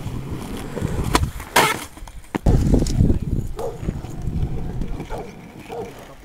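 Skateboard on a concrete court: two sharp clacks of the board, the second and louder about a second and a half in, then the low rumble of the wheels rolling over rough concrete that fades near the end.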